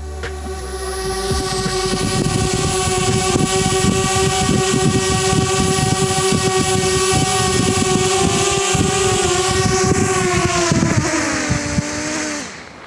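DJI Spark quadcopter's propellers whining with a steady, high-pitched buzz as it flies in close and hovers, getting louder over the first couple of seconds. Rough buffeting from its downdraft hits the microphone. Near the end the pitch drops and the whine dies away as it settles onto the road and its motors spin down.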